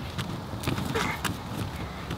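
Children jumping on a small trampoline among balloons: an uneven run of thumps as feet land on the mat.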